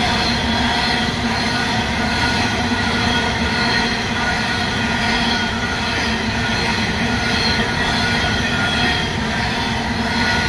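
Loaded coal hopper wagons of a long freight train rolling past close by: a steady rumble of wheels on rail, with several thin, high-pitched tones ringing over it throughout.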